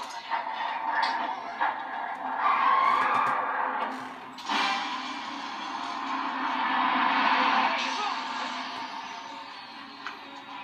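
A film soundtrack playing from a television and picked up in the room: dramatic music and sound effects, with a sudden louder rush of noise about four and a half seconds in.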